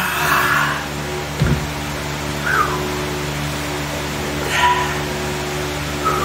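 A man yelling and grunting with effort, then blowing out hard breaths, during heavy dumbbell curls, over a steady low hum. A dull thump comes about one and a half seconds in.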